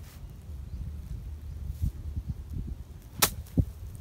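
A golf club strikes a golf ball once, a single sharp crack about three seconds in.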